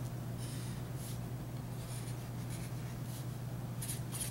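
A black marker writing on a sheet of paper in short, faint scratchy strokes, about one a second, over a steady low hum.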